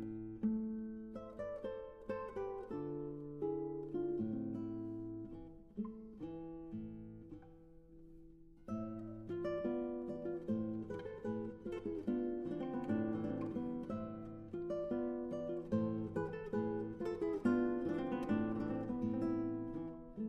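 Background music on acoustic guitar, a run of plucked notes, softening for a couple of seconds near the middle before picking up again.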